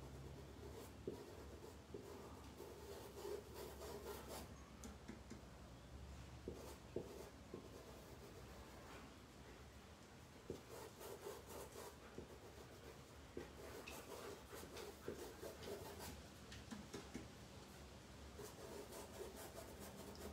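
Faint rubbing and scratching of a paintbrush stroking paint onto stretched fabric, with a few light ticks along the way.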